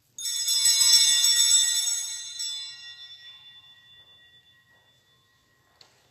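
Sanctus bells, a cluster of small altar bells, shaken once: a bright jingling ring for about two seconds that then fades away over a few more seconds.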